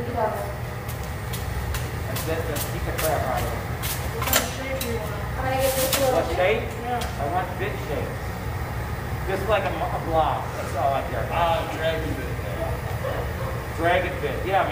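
Steady low roar of glassblowing furnaces and a glory hole running, with a few sharp clicks of metal tools in the first half and indistinct voices.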